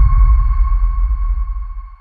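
Electronic logo-sting sound effect: a steady high ringing tone over a deep low rumble, both fading away near the end.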